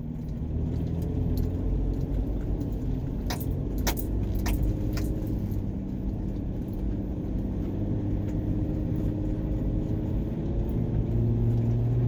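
A car driving: steady low engine and road rumble, with a few light rattles about three to five seconds in and a low hum that grows stronger near the end.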